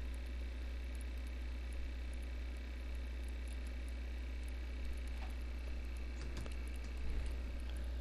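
Low steady hum and faint hiss of a recording setup with no voice, with a few faint clicks in the second half.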